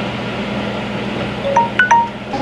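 Smartphone countdown timer's alarm chime going off as it reaches zero: a short run of about four clear notes, starting about a second and a half in. It signals that the 15-minute water-bath processing time is up. A steady hiss and hum runs underneath.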